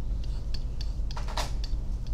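Stylus tapping and scratching on a pen tablet while writing numbers: a string of light clicks a few per second, with one longer scratching stroke about a second and a half in, over a steady low hum.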